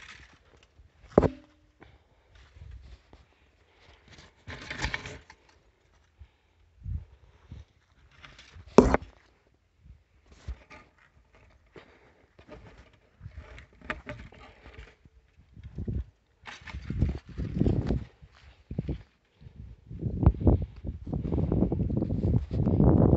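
A person walking over dry ground and through weeds, with scattered rustles and two sharp knocks, about one second in and about nine seconds in. From about sixteen seconds in, low gusts of wind buffet the phone's microphone.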